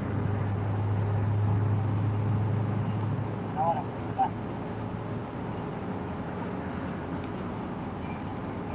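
Street traffic ambience with a steady low vehicle hum that fades out about three seconds in, and a couple of short, distant voices around the middle.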